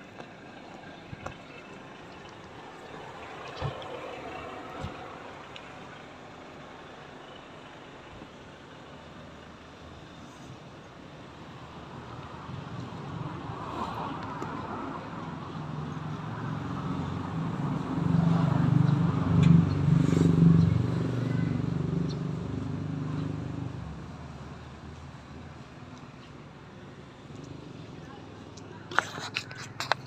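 A motor vehicle passing along the street: a low engine and road rumble that swells over several seconds, is loudest a little past the middle, then fades.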